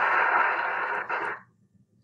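Audience applauding, thin and muffled as if heard through a recording, stopping about a second and a half in.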